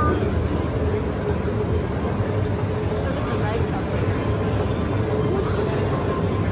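Steady low rumble of a moving walkway and the hall around it, with a murmur of distant voices.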